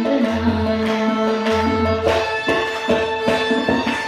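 Carnatic music: the singers' voices close a phrase at the start, then violin and hand-drum strokes carry an instrumental passage over a steady drone.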